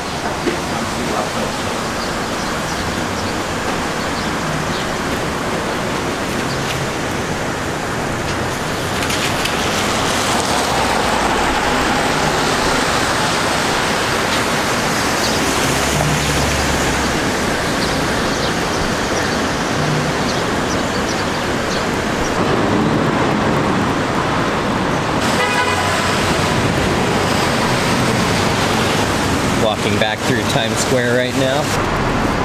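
City street traffic on rain-wet roads, a steady wash of tyre and engine noise, with a car horn honking about 25 seconds in and voices of passers-by.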